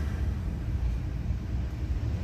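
Low, steady rumble of a car, heard from inside its cabin.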